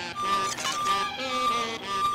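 An electronic alert beeping, one high tone repeating evenly about three times every two seconds, over music.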